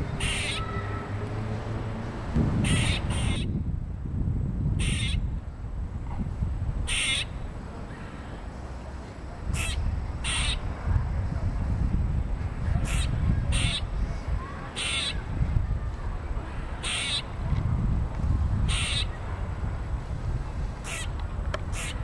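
Gray squirrel scolding with short, sharp alarm barks, about fourteen of them one to two seconds apart, some in quick pairs, over a steady low rumble.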